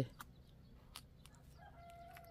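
Faint outdoor quiet with a couple of soft clicks, then near the end a faint, drawn-out call from a distant bird.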